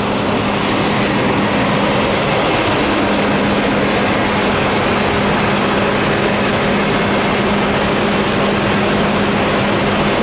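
A heavy engine running steadily close by: a loud, constant drone with a steady hum.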